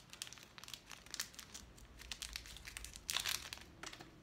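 Snack wrapper crinkling as it is worked open by hand, in a run of small crackles with a louder burst about three seconds in.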